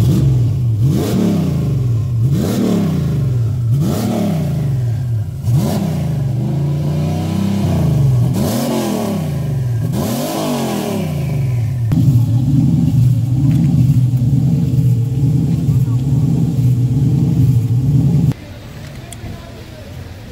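Ford Mustang Cobra's V8 being revved in quick repeated blips, each rising and falling, then held steady at a raised speed for several seconds before cutting off suddenly near the end.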